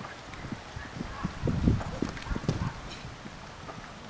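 Horse's hooves cantering on grass: a run of dull thuds, loudest about halfway through, then the hoofbeats stop.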